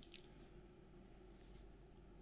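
Near silence: studio room tone in a pause between speech.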